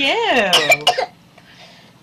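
A toddler's high voice gliding up and down, then breaking into a few quick coughs, all over within about a second.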